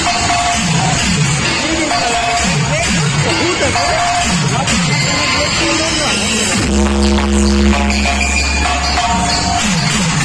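Loud electronic dance music from a street DJ sound system of stacked speaker cabinets. Falling bass sweeps repeat under a steady high note, then about two-thirds of the way through a heavy, sustained deep bass drop comes in.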